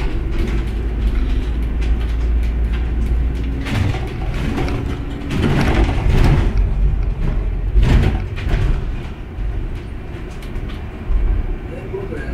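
Ride noise heard from inside a moving double-decker city bus: a steady deep engine and road rumble with a faint drone, and louder rushing swells about halfway through and again around eight seconds.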